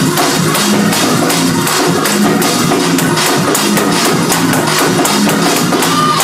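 Live gospel praise-break music from a church band: a fast, driving beat under bass and keyboard with guitar, loud and steady throughout.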